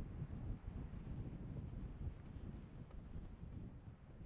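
Faint wind buffeting the microphone, a low uneven rumble.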